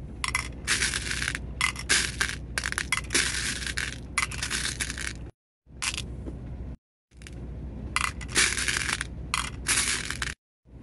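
8 mm rose quartz stone beads clattering and clicking in a glass bowl and a small clear container as handfuls are scooped and dropped, in busy bursts. The sound cuts off abruptly twice, about five seconds in and again about seven seconds in.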